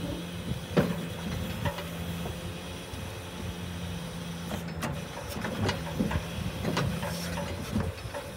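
Steady low mechanical hum from a low-bed trailer's hydraulic ramp system running. The hum breaks off briefly a couple of times, with scattered metal clicks and knocks.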